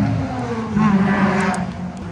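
A car engine running, its sound swelling and rising in pitch for about a second near the middle.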